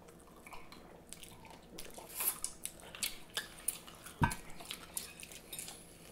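Close-miked eating-show sounds: scattered small clicks and taps of cutlery and plates, with a louder knock about four seconds in.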